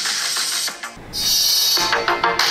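An electronic music track playing through a smartphone's loudspeakers. About a second in there is a short dip, and then the sound comes back fuller, with more bass.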